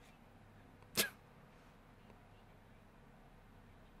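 A single short, sharp sneeze about a second in, over quiet room tone.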